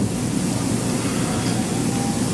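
Steady, even hiss of an old 1960s film soundtrack's background noise, with no other sound in it.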